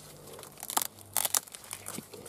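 Young ear of corn being twisted and snapped off its stalk by gloved hands: crisp crackling and tearing of husk leaves. There are two short crackles a little under a second in, then a quick cluster of three just after one second.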